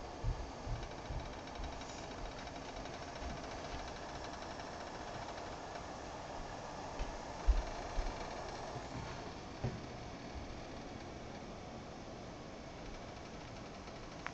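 Steady hiss and rumble of a pot of water heating toward the boil on an electric coil burner, with a few low handling knocks, the loudest about halfway through.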